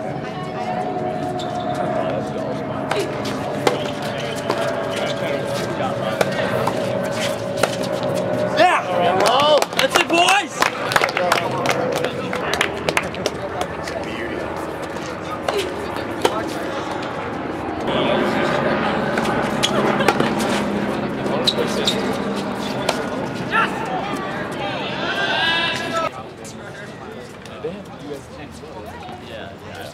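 Tennis balls struck by rackets and bouncing on a hard court during doubles points, a string of sharp pops, over spectators' voices and shouts. A long held tone falls slowly through the first twelve seconds or so.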